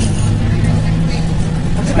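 School bus engine running, a steady low drone heard inside the bus cabin.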